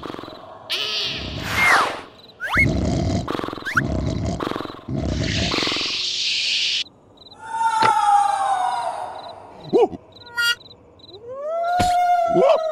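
Cartoon sound effects: a string of short noisy rushes and whooshes with quick rising squeaks, then a long pitched call that falls in pitch about halfway through. Near the end a character lets out a drawn-out cry of shock.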